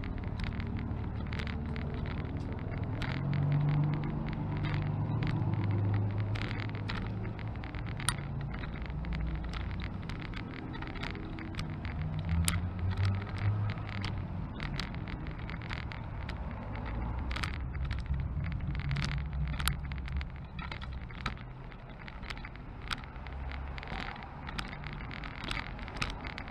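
A small wheeled vehicle carrying the camera rolls along a paved sidewalk, rattling and clicking sharply many times over the pavement, over a low rumble of street traffic that swells and fades.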